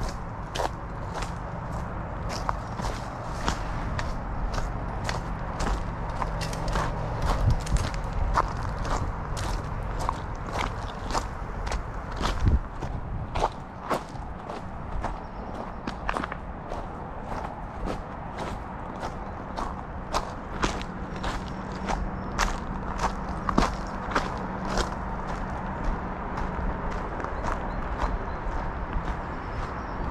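Footsteps on a gravel and loose-stone dirt trail, a steady walking pace of about two steps a second, with a steady low rumble underneath.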